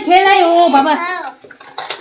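A child's voice speaking for about a second, followed by a few faint light clicks.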